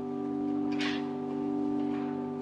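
Church organ holding one sustained chord, steady and unchanging, with a brief hiss about a second in.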